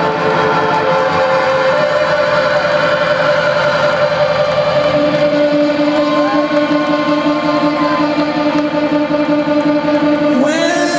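A live rock band playing a loud, sustained droning passage of held notes without singing; a second, lower held note joins about halfway through.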